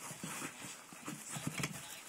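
A pet animal making short, low, irregular sounds, with a few faint clicks.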